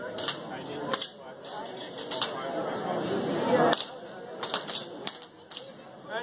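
Sharp cracks at irregular intervals, several in quick succession in the last two seconds: handgun shots being fired on the range.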